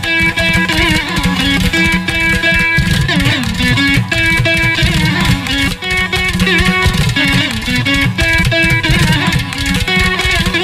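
Carnatic veena playing the raga Gauda Malhar: plucked notes with sliding, oscillating pitch bends (gamakas), over low percussion strokes of the accompaniment.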